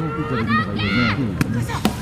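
Voices shouting and calling from the stands and benches, with a sharp crack late on as an aluminium or composite softball bat hits the ball.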